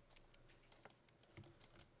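Near silence with faint, scattered clicks of a computer keyboard.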